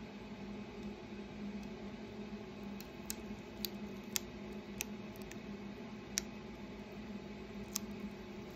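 Transfer-tape masking being picked and peeled off a laser-scored plywood round with a hooked weeding tool: small sharp clicks and ticks at irregular intervals, starting about three seconds in, over a steady low hum.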